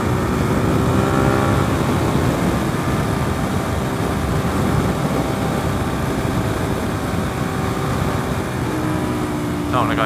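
Suzuki SV650S's V-twin engine running at road speed under heavy wind noise on the microphone. Its tone stands out most in the first second or two and again near the end.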